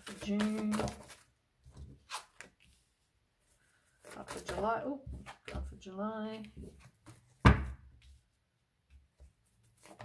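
A woman's voice speaking briefly between the light handling sounds of tarot cards being dealt onto a cloth-covered table, with one sharp knock about seven and a half seconds in.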